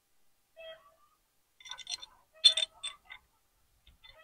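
Light metal clinks and rattles of a steel gate hinge being fitted by hand onto a metal tube gate: a few scattered, faint ringing taps, most of them bunched about two to three seconds in.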